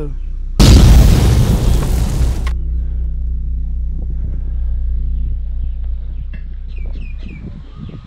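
Large bossed temple gong struck once with a mallet: a loud crash about half a second in, then a long low ringing hum that slowly fades.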